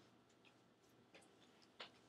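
Near silence: room tone with a few faint, short ticks, the clearest one near the end.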